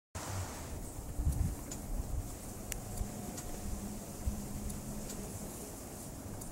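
A homemade steam engine running slowly on low-pressure compressed air, with faint scattered clicks, under a low gusty rumble of wind on the microphone.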